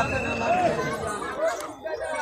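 Indistinct chatter of several men's voices talking over one another.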